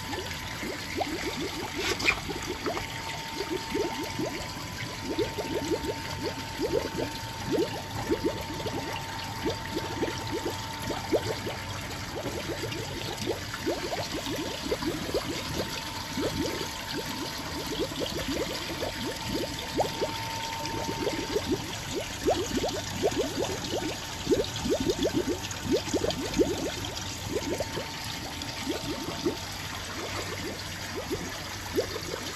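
Water pouring out of clear plastic pipes into plastic tubs, with constant gurgling and bubbling.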